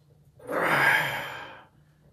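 A man's forceful exhale of effort, one breathy blow lasting about a second, while he presses a barbell up from his chest.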